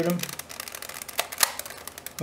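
Plastic 3x3 Rubik's cube being turned by hand: a quick series of clicks as the layers are twisted, the sharpest about one and a half seconds in.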